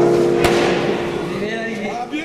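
A strummed guitar chord from the background music rings on and slowly fades. A single sharp crack comes about half a second in, and voices come in near the end.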